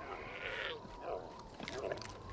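A few faint, short animal calls from a herd of cartoon llamas grazing, spread through the quiet moment.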